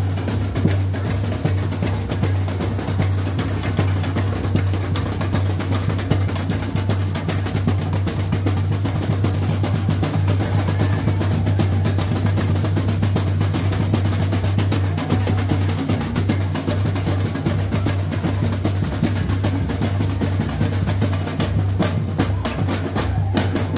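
Samba bateria (percussion ensemble) playing live: a loud, unbroken, busy rhythm of drums and hand percussion with a strong, steady bass-drum low end.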